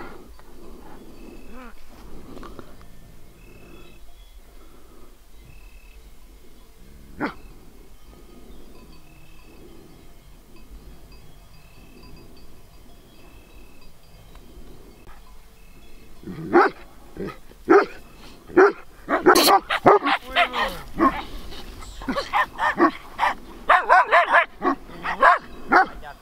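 Romanian shepherd dogs barking: a fairly quiet stretch, then a rapid run of loud barks from about two-thirds of the way in to the end.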